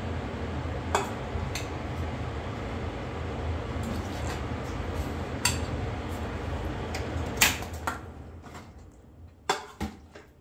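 Metal spoon clinking and scraping against a steel pot and ceramic bowls as macaroni is served out, a handful of sharp clinks with the loudest about seven seconds in. Under it runs a steady low hum that fades out near the end.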